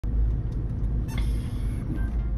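Steady low rumble of vehicles, with a brief sharp hiss starting about a second in.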